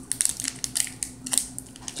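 Thin plastic sand-art packet crinkling in the fingers as it is squeezed to pour coloured sand through a funnel into a bottle, in quick irregular crackles.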